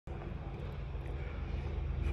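Faint, steady low rumble of outdoor background noise, slowly growing louder.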